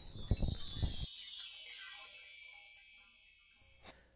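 A chime sound effect: a shimmering cascade of many high chime tones that slowly fades away, cut off just before the host's outro. It serves as a transition sting between the end of an interview and the closing narration.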